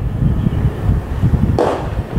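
Wind buffeting the microphone in a steady low rumble, and about one and a half seconds in a single short pop: the pitched baseball smacking into the catcher's mitt.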